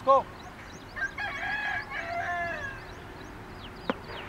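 A rooster crowing once, starting about a second in and lasting under two seconds, with small birds chirping faintly throughout. A short, loud rising call comes at the very start, and a single sharp click comes near the end.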